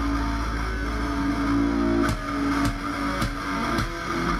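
A live rock band's instrumental passage: electric guitars hold a sustained, strummed riff. About halfway through, drum hits join at roughly two a second.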